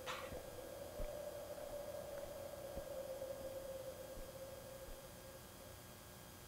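Quiet room with a faint steady hum-like tone that fades near the end, and a few soft clicks.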